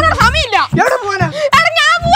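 A person's high, wailing voice that swoops sharply up and down in pitch, over background music with a low bass line.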